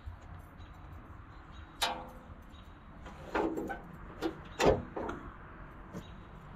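A few separate short knocks and scrapes as a tie-down strap and its metal hook are handled and unhooked from the steel side of a gravity wagon, the sharpest knock a little past the middle.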